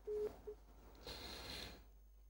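Telephone busy tone on the phone-in line after the caller has hung up: short beeps at one steady pitch, about two and a half a second, with the last two near the start, followed by a faint line hiss.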